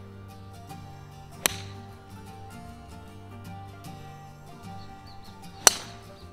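Background music with two sharp clicks. The louder one, near the end, is a golf club striking a ball off the tee in a full swing. The first, about a second and a half in, is a similar sharp strike.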